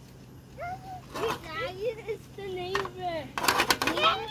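Young children's voices calling and chattering in high, sliding tones, with a short loud noisy burst about three and a half seconds in.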